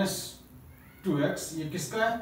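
A man speaking, with a pause of under a second near the start before his voice resumes.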